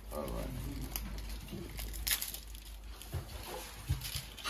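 Faint, indistinct speech over a low steady hum, with a few short soft knocks.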